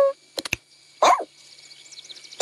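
Cartoon puppy's voiced bark, once, about a second in, short with a falling pitch, after two short clicks.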